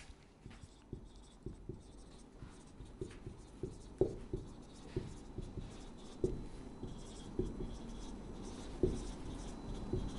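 Marker pen writing on a whiteboard: a faint, irregular run of small taps and short strokes as the letters are written.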